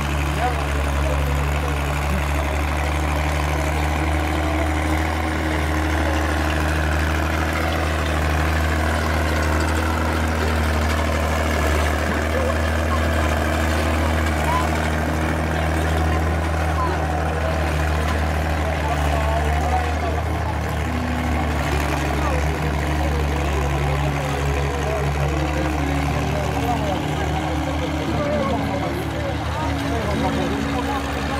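Tractor engines running steadily as they pull ploughs through dry soil, a low drone whose pitch shifts about twenty seconds in and again near the end. Crowd chatter runs over it.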